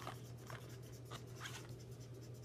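Quiet room tone: a steady low hum with a few faint, short, soft sounds.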